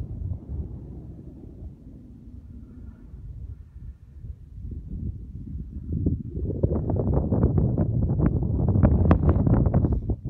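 Wind buffeting the microphone, a low gusting rumble that grows much louder and rougher about six seconds in.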